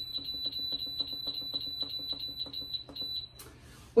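Electric pressure canner's control panel beeping: a rapid, high-pitched electronic beep repeating several times a second as the high setting and 25-minute time are entered. The beeping stops a little past three seconds in.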